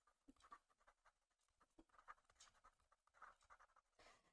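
Near silence, with a few faint scratches and light taps of a stylus writing by hand on a tablet.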